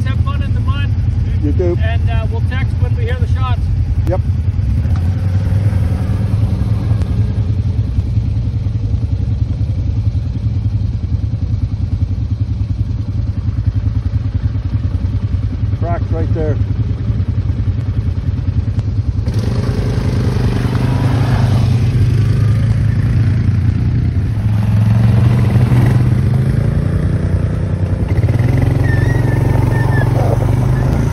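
ATV engines running steadily at low revs. About two-thirds of the way in the quads move off along a rough dirt trail, and the sound grows louder and rougher with engine and trail noise.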